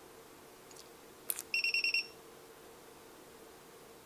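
A sharp click as the test probes are shorted together, then a handheld digital multimeter's beeper sounds a quick run of about six short high beeps.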